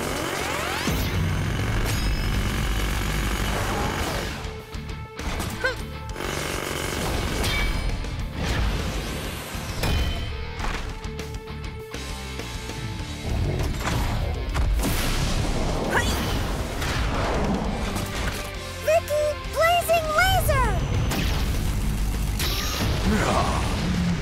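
Cartoon battle soundtrack: music under effects of a giant drill grinding against ice, with impacts and booms.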